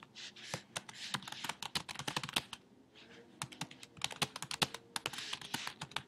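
Typing on a computer keyboard: rapid, irregular key clicks, with a short pause a little before the middle.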